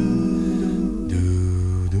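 A cappella vocal harmony sung by one male singer multi-tracked into layered parts. The voices hold sustained chords, a low bass voice comes in about a second in, and short 'dum dum' syllables sound at the end.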